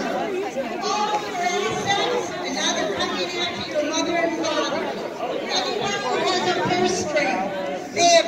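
Crowd chatter: several people talking at once, their voices overlapping with no single clear speaker.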